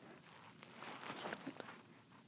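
Faint handling noise from a hand working close to the phone among the toys: soft rustling with a few light taps in the second half.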